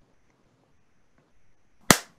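Near silence, then one sharp click near the end.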